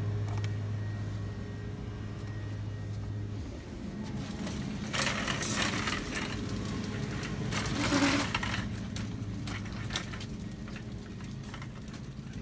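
Rustling and handling noise from a person walking through a store carrying a plastic shopping basket, in two louder stretches about halfway through, over a steady low hum.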